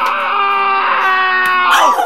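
A woman's long, drawn-out wail, held on one high note and falling in pitch near the end. It comes in a fit of hysterical laughter.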